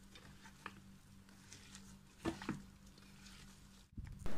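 Faint squishing and rustling of a bare hand mixing raw pork, sliced onions and spice powders in a pot, with a low steady hum underneath; the loudest squelches come a little past halfway.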